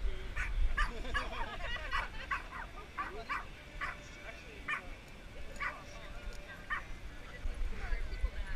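A dog yipping in short, sharp barks, several a second for the first few seconds, then single yips about a second apart.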